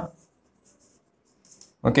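Chalk writing on a blackboard: a few short, faint scratches as a word is written.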